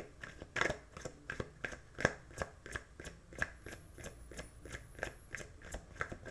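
Tarot deck being shuffled by hand: short papery slaps of the cards, about three a second in an even rhythm.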